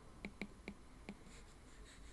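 Stylus tip tapping on a tablet's glass screen during handwriting: several light, faint clicks in the first second or so.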